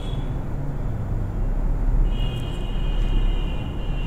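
Steady low background rumble and hum, with a faint high steady tone lasting about a second and a half past the middle.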